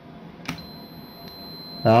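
Clamp meter's continuity beeper sounding one steady high beep, starting about half a second in with a click as the probe meets the terminal. The beep means the contactor's pole conducts from L1 to T1 while the contactor has no power.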